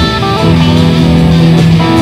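Instrumental rock passage played on overdubbed electric guitars, with a long low note held through the middle.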